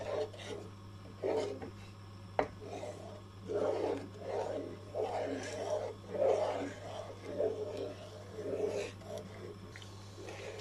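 Wooden spoon stirring thick semolina halwa in a nonstick pan: repeated scraping and squelching strokes, about one or two a second, as the halwa thickens. A sharp knock of the spoon against the pan about two and a half seconds in.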